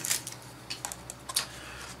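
A handful of light clicks and knocks from hard plastic toy pieces and packaging being moved aside on a desk, the sharpest just past a second in.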